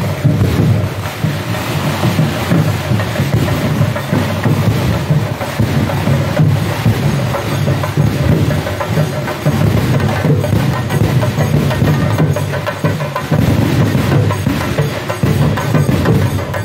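Festival drums and percussion playing loudly and without a break in a dense, driving rhythm, the beats running together with crowd noise.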